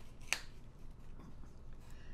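A small folded paper fortune card being peeled open by hand, with one sharp click about a third of a second in.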